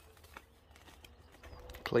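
Near-quiet outdoor ambience with a few faint clicks and a faint steady tone in the middle, then a man's voice starts near the end.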